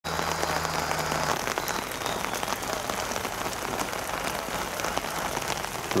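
Steady rain falling, with many fine drops ticking close by, likely on the umbrella overhead. Under it a tractor engine's steady low note can be heard for about the first second, then stops.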